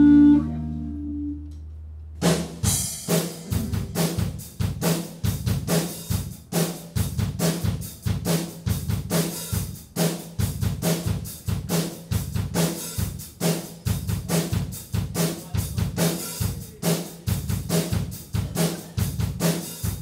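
Live rock band: a held chord fades out over the first two seconds, then a drum kit starts a steady beat of kick and snare strikes, about two to three a second, with a low note pulsing under each hit.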